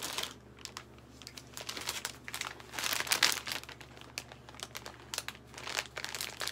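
Clear plastic packaging bags crinkling and rustling as they are handled, in irregular bursts, loudest about three seconds in.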